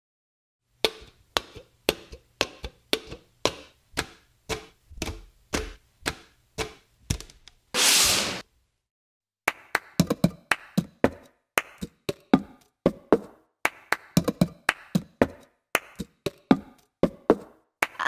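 The cup game: red plastic cups knocked, tapped and slapped on a tabletop, mixed with hand claps, played as percussion. It starts as a single even pattern of about two hits a second. A brief hiss comes near the middle, and after a short pause several players join in a denser, layered rhythm.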